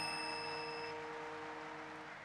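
The last chord of a live band ringing out and fading away as a song ends, with a high bell-like chime that dies out about a second in.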